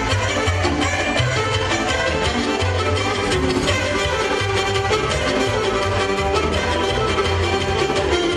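Instrumental Romanian folk dance music played by a live party band: a melody line over a steady, pulsing bass beat.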